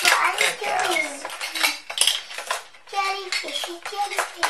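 Hard plastic pieces of a toy fishing game clattering and clicking as they are handled and swapped over, in quick, irregular knocks.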